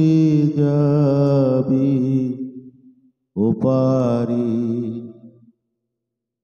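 A man singing a Bengali Islamic gojol unaccompanied, in two long held phrases with a wavering vibrato. The first phrase fades out about three seconds in; the second starts half a second later and dies away near the end.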